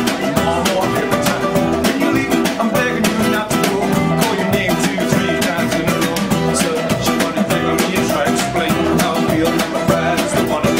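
Banjos playing a bluegrass-style arrangement: rapid, evenly spaced picked notes over a steady plucked accompaniment.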